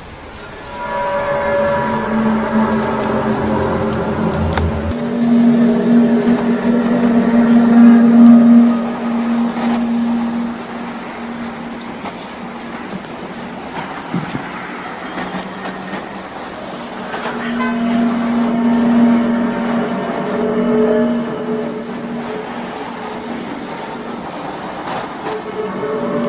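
Loud, sustained trumpet-like drone of several tones at once, heard outdoors among apartment blocks. It swells to its loudest twice, once near the middle of the first half and again past the middle, fading in between.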